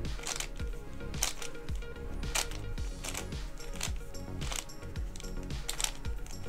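Background music with a steady beat. Under it, the plastic clicking and clatter of a Sengso Fifth Magic Tower twisty puzzle being turned by hand in quick sequences of moves.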